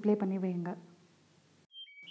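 A woman speaking for under a second, then near the end a short electronic beep of two notes, a high tone followed by a slightly lower one.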